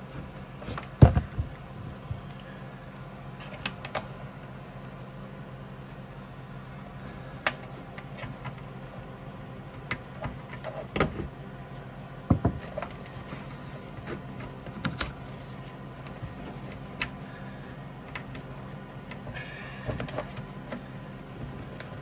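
Hands working a dash-cam cable through a rubber wiring boot and grommet: scattered handling clicks and knocks, the loudest about a second in and again near twelve seconds in, over a steady low hum.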